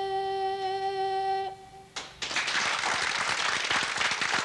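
Children's choir holding a final note in unison, one steady pitch, which ends about a second and a half in; a moment later audience applause breaks out and carries on.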